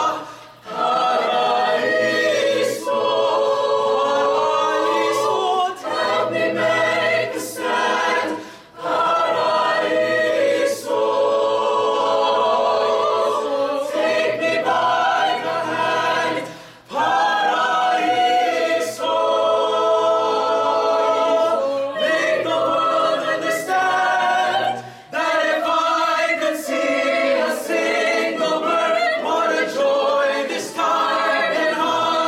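Mixed-voice chamber choir singing a cappella in close harmony, holding long chords in phrases broken by brief pauses about every eight seconds.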